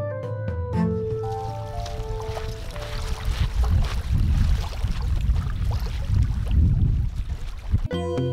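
Keyboard background music for about the first second, then outdoor lakeshore sound: an uneven low rumble of wind on the microphone with water lapping against the bank. Music cuts back in right at the end.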